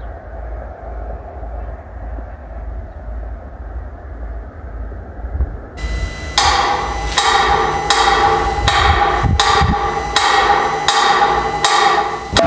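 A steady low rumble, then about six seconds in a manual pendulum metronome is set going and ticks evenly, about one and a half ticks a second.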